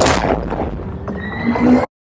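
Loud intro sound effect for a wrestling promotion's logo animation: a dense rushing sting with a faint rising tone in its second half, cutting off suddenly near the end.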